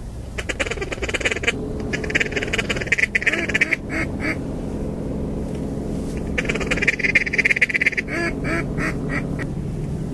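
Duck quacking calls in two long, rapid chattering runs, with a few short separate quacks near the end.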